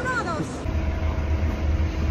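Bus engine running, heard from inside the passenger cabin as a steady low rumble with a faint steady hum. It comes in about half a second in, after a brief voice.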